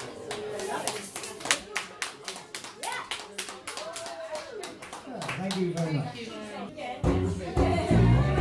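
Steady rhythmic hand clapping with voices over it. A live band with bass guitar comes in loudly about seven seconds in.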